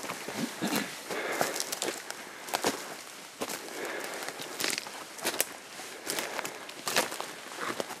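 Footsteps crunching over a forest floor littered with dry deadfall, irregular steps with scattered sharp snaps and clicks of small sticks.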